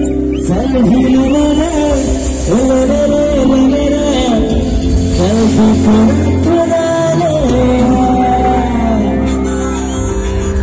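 Live band music played through a concert PA: a sung melody over sustained keyboard notes and a heavy bass, recorded from the audience.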